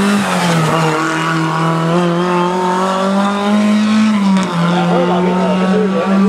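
Rally car engine running hard at high revs, its pitch held nearly steady but dropping briefly about a third of a second in and again about four and a half seconds in. Fainter wavering squeals rise and fall near the end.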